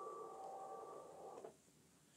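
Near silence: faint room tone with a thin steady hum fading away, then cutting off to dead silence about a second and a half in.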